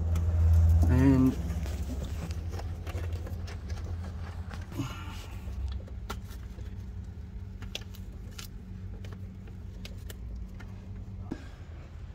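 Scattered light metallic clicks and handling noise from hands working around a turbocharger in an engine bay, hooking on the heat blanket's retaining springs, over a steady low hum. A louder low rumble fills the first second or so.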